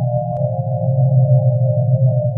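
Electronic synthesizer improvisation: a held low drone under sustained, muffled chord tones, with a fast pulsing flutter. A brief click comes about a third of a second in.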